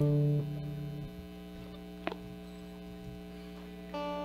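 Steady electrical hum from the church sound system between songs, with a held instrument note dying away about a second in and a single sharp click about two seconds in.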